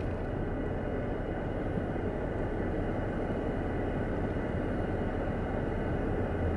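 Steady engine and cabin noise heard from inside a car, an even low rumble with no sudden events.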